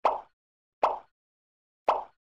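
Three short, sharp knocks roughly a second apart, each dying away quickly, with complete silence between them.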